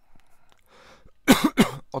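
A man coughing twice in quick succession, short and loud, just past the middle.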